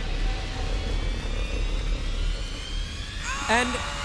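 Steady low rumbling arena noise with a faint, slowly rising whoosh through it. A ring announcer's voice comes in near the end.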